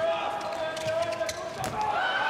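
Indoor handball arena sound: a handball bouncing on the court floor in a few sharp knocks over the hall's crowd noise. A steady held tone runs under it for about the first second.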